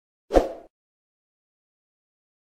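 A single short pop sound effect, with a low thump, about a third of a second in, from an animated subscribe-button end card.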